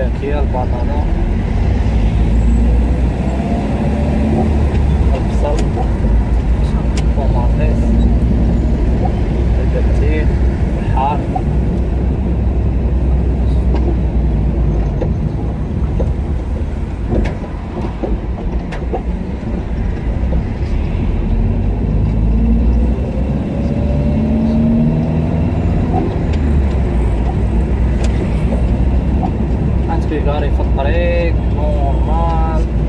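Car driving slowly in city traffic, heard from inside the cabin: steady low engine and road rumble, with voices mixed in.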